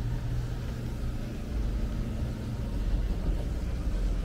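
Low, steady rumble of a sportfishing boat's engines running at low speed as it comes in to the dock.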